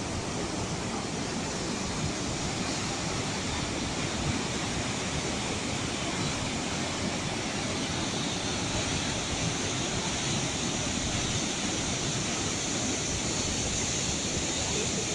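Randha Falls, a large river waterfall pouring over basalt rock into a gorge, rushing steadily as one even, unbroken noise of falling water.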